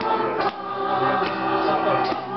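A small mixed group of men and women singing a Christmas carol together, accompanied by an electric keyboard.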